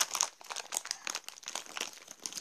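Rapid crinkling and rustling close to the microphone, a dense run of small crackles.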